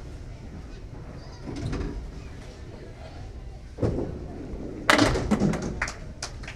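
Candlepin bowling: a thump about four seconds in, then about a second later a loud clatter of a candlepin ball hitting the thin wooden pins, the pins knocking against each other and falling for about a second.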